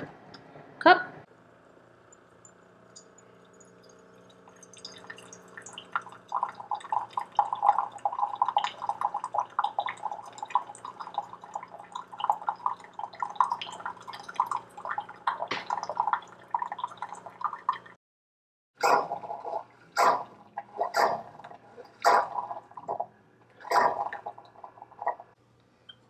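Keurig single-serve coffee maker pumping hot water into a mug. A steady pump hum is joined a few seconds in by rapid gurgling and spluttering of water, which stops abruptly about two-thirds of the way through. A handful of short sputtering bursts follow.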